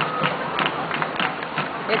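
Rain falling, with irregular drops tapping close by over a steady hiss.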